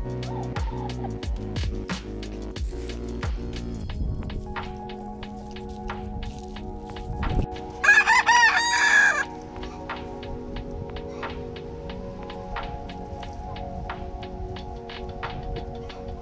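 A rooster crowing once, about eight seconds in, loud and lasting about a second and a half, over background music with a steady beat.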